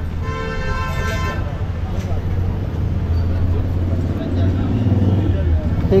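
A vehicle horn sounds steadily for about a second and a half at the start, over a constant low hum of engines and street traffic.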